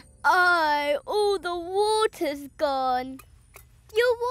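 A baby vocalising without words: a series of drawn-out, wavering fussy cries, which stop about three seconds in.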